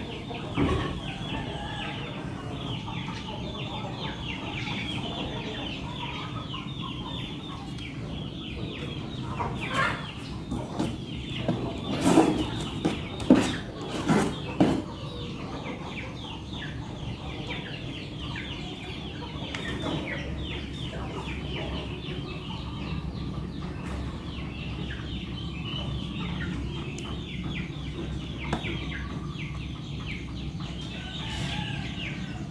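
Domestic fowl clucking and chirping, a dense run of short falling calls, with a cluster of louder clattering knocks about halfway through.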